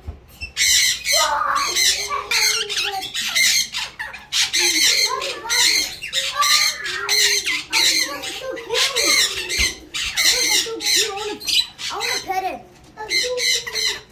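Parrot squawking over and over in short, harsh calls, mixed with lower, voice-like chatter.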